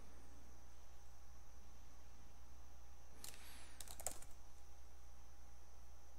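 A short run of clicks at a computer, as the trading chart is switched to another stock symbol, in two small clusters about halfway through, over a steady low electrical hum.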